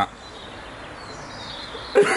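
Outdoor ambience: steady low background noise, with a faint high bird call about a second in.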